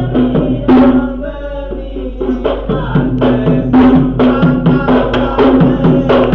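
Traditional Sri Lankan drumming, quick drum strokes several times a second over a steady held tone.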